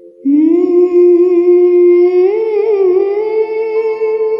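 A woman's voice singing one long, wordless held note. She slides up into it about a quarter second in, wavers through an ornament around the middle, then settles and holds.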